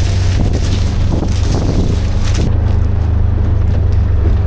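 Utility side-by-side (Ranger UTV) engine running steadily as it drives slowly over a harvested corn field. Wind rushes over the microphone for the first two and a half seconds, then drops away, leaving the engine hum.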